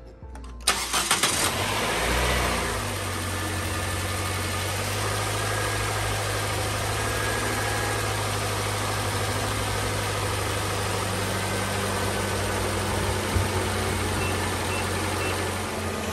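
2014 Nissan Sentra SR's 1.8-litre four-cylinder engine started after a fresh oil and filter change: the starter cranks for about a second, the engine catches and flares up briefly, then settles into a steady idle.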